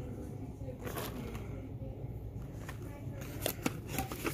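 Plastic candy packaging being handled, a few light crinkles and clicks, the busiest near the end, over a steady low store hum.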